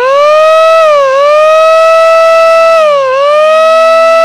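Impact Alarm Horn, a handheld battery-powered siren horn, sounding a loud, steady siren wail. It reaches full pitch in the first moment, dips briefly in pitch twice (about a second in and again about three seconds in), and returns to the same held tone each time.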